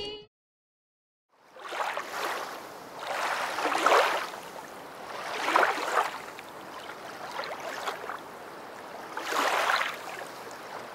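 River water splashing and rushing around a swimming dog, in swells that rise and fall every second or two. It starts about a second and a half in, after a moment of silence.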